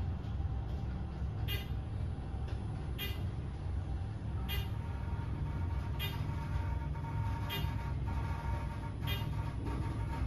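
Westinghouse traction elevator, modernized by ThyssenKrupp, travelling upward at speed, heard from inside the cab: a steady low rumble with a short click about every second and a half, roughly once per floor passed. A faint steady whine joins about halfway through.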